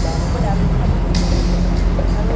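Bellagio fountain show music playing over outdoor loudspeakers under a steady low rumble, with crowd voices. About a second in there is a short rushing hiss from the fountain jets.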